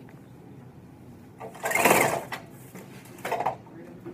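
A man making an engine noise with his mouth, a short buzzing burst about a second and a half in that rises and falls in pitch, with a briefer sound near the end.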